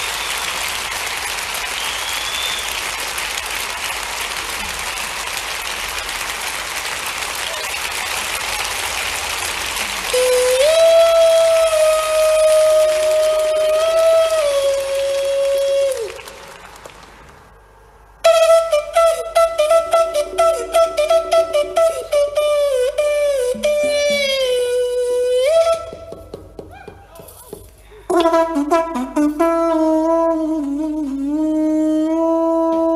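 Audience applause for about the first ten seconds, then blown conch shells playing long held notes that bend in pitch, with short tongued runs and a brief gap in the middle. Near the end the notes drop lower, as from a different shell.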